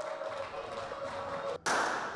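Quiet room tone with a faint steady hum, then, about one and a half seconds in, a sudden loud burst of noise in the indoor pistol-range hall that holds evenly to the end.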